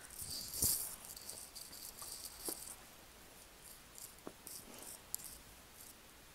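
Faint rustling with a few small clicks: handling noise from hands and sleeves moving around wired earphones near the microphone, in patches over the first two or three seconds and again about five seconds in.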